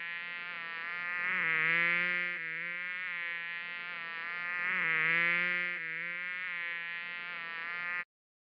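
A buzzing flying-insect sound effect for the toy bug. It is steady, swells louder twice, about two and five seconds in, and cuts off suddenly at the end.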